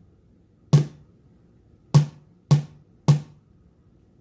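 Four separate drum hits, each a sharp attack with a deep low thud that dies away quickly, with quiet between them.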